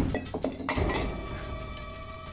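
A few light glass clinks in the first half-second or so, as of a martini glass handled on a table, over background music with sustained tones.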